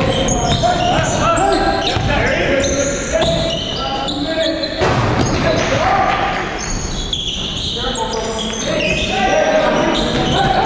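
Basketball game sounds echoing in a gym: a ball bouncing on the hardwood, short high sneaker squeaks, and players' voices calling out.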